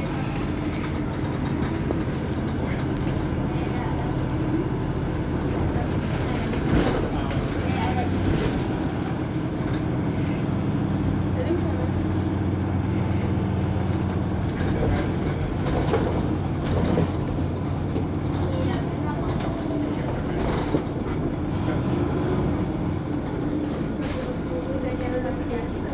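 Mercedes-Benz Citaro C2 hybrid city bus running, its diesel engine a steady low hum that grows stronger and fuller from about 8 to 19 seconds in. A few sharp knocks come through, with voices in the background.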